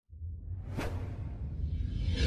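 Whoosh sound effect over a deep rumble from an animated logo sting: it swells up out of silence, with a sweeping whoosh peaking a little under a second in.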